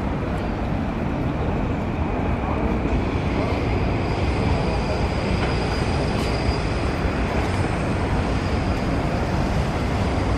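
Steady city traffic noise with a strong low end, and a faint high whine in the middle seconds.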